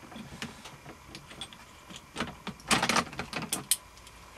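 Hands working an airsoft rifle's fittings: a run of clicks and rattles from about two seconds in, loudest near three seconds, then two sharp clicks near the end, as the scope is taken off the top rail.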